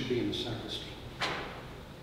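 A brief low murmured voice sound at the start, then a single short sharp knock just after a second in, in a quiet church.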